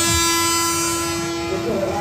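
A horn blowing one long note at a steady pitch, loudest at the start and easing off slightly, over crowd noise.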